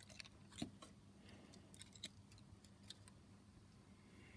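Near silence, broken by a few faint, sharp clicks as fingers handle the small plastic crane of a model lorry.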